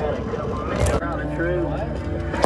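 Children's high-pitched voices talking and chattering over the steady low road rumble inside a moving van's cabin.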